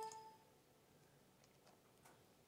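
A computer's volume-adjust ding, a short pitched chime that rings out and fades within the first half second, then near silence with a couple of faint clicks.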